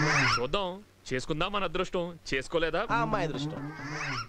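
Speech only: a man talking, with a short pause about a second in.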